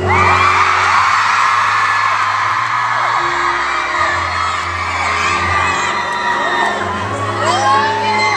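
Concert crowd screaming and cheering, many high shrieks rising and falling, over sustained keyboard chords that change a few times.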